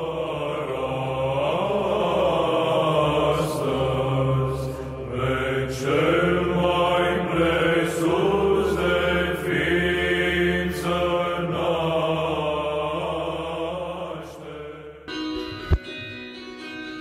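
Orthodox church chant: voices singing a slow melody over a steady low held drone. It stops abruptly near the end and is followed by a single sharp click.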